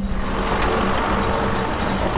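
Tractor-drawn seed drill working a field, its covering chains dragging through the soil: a steady mechanical rattle and rush over a low engine hum, starting abruptly as the music stops.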